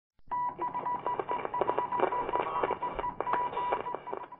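Electronic telephone-line style sound effect: a high steady beep that cuts in and out, over crackling clicks, with the thin, narrow sound of a phone line.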